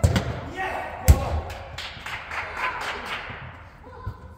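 A football being kicked on an indoor pitch: sharp thuds, the loudest about a second in, with players shouting to each other in a large reverberant sports dome.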